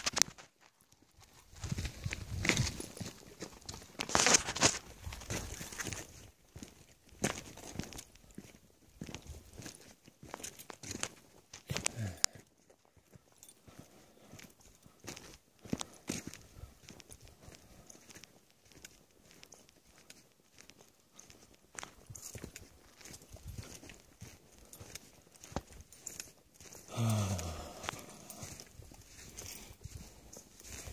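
Footsteps on a sandy dirt trail, an irregular run of soft crunches and scuffs, heavier in the first few seconds. Near the end a brief low voice-like sound falls in pitch.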